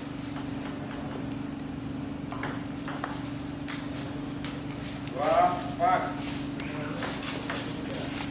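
Table tennis ball clicking against paddles and the table in a rally, in irregular sharp clicks. A voice calls out briefly about five seconds in, the loudest sound.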